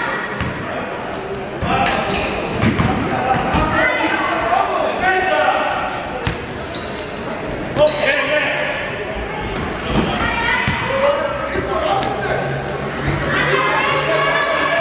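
Basketball game in a large gym: a ball bouncing on the hardwood court with sharp knocks, under shouting voices of players and spectators that echo in the hall.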